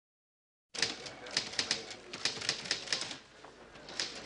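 Typing on a typewriter: quick key strikes, about five a second, begin after nearly a second of silence and slacken briefly near the end.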